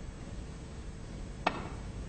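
A single sharp click from a snooker shot being played, about three-quarters of the way in, over a quiet arena hush.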